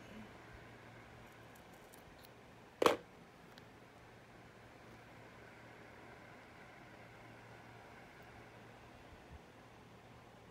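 Quiet room tone with a faint low steady hum, broken once about three seconds in by a single sharp knock, with a couple of faint ticks near the end.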